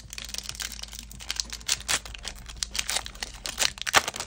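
Trading cards and a foil booster-pack wrapper being handled, giving a dense, irregular run of crinkles and small clicks.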